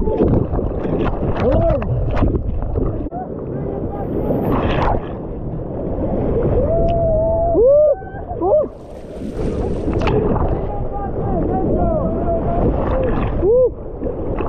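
Whitewater rapids rushing and splashing against an inflatable raft, heard loud and close from a camera at the waterline, with a few short sliding pitched sounds rising and falling over the roar.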